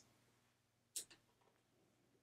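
Near silence: room tone, with one brief faint click about a second in.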